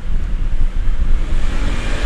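Steady low rumbling background noise with a faint hiss, picked up by the microphone between spoken phrases.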